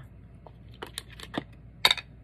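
A few light clicks and taps of a plastic ink pad case being handled and opened on the craft table, the sharpest click near the end.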